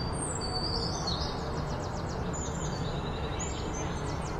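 Small birds chirping and trilling, with quick high notes and rapid rattling runs, over a steady low background hiss.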